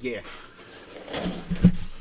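Large cardboard box being handled on a table: a scraping, rustling slide of cardboard, with a sharp click a little past a second in and a heavier thump about a second and a half in.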